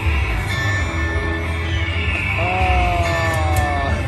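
Buffalo Ascension video slot machine playing its free-games bonus music and reel sound effects as the reels spin and stop. A long, slightly falling tone holds through the last second and a half as multiplier symbols land.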